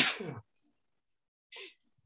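A person sneezing once: a sudden, loud burst right at the start that dies away within half a second.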